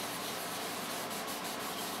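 A rag pad rubbing back and forth over the bloodwood headstock overlay of an acoustic guitar neck, working Tru-Oil into the wood grain as a steady rubbing hiss.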